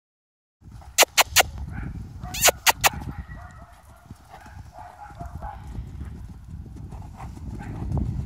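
Horse cantering around a sand pen, its hoofbeats dull and irregular, with two quick runs of very sharp clicks: three about a second in, four more a second later.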